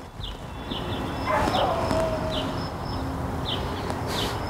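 Crickets chirping, short high chirps repeating. A louder steady rushing noise swells in under them soon after the start, with one brief falling whine in its middle.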